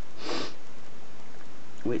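A single short sniff through the nose shortly after the start.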